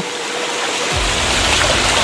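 Shallow stream running over rocks, a steady rushing hiss that grows gradually louder. From about a second in, a low rumble of the microphone being moved is added as the phone swings round.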